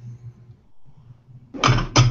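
Faint clinks and scrapes of a utensil stirring mushrooms in a stainless steel sauté pan, over a low steady hum. A man's voice comes in near the end.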